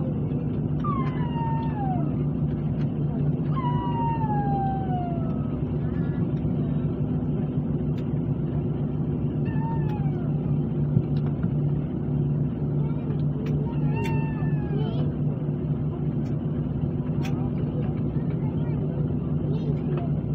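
Steady drone of a turboprop airliner's engines at ground idle, heard inside the cabin while taxiing. Several short falling whines cut in at intervals over the drone, with a few faint clicks.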